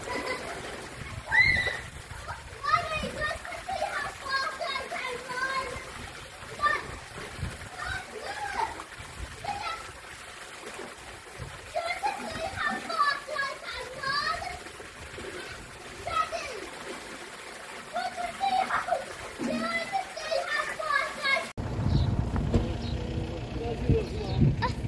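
Children shouting and calling to each other while playing in a swimming pool, with water splashing over the steady pour of a fountain spout into the pool. Near the end the sound cuts abruptly to a low rumble.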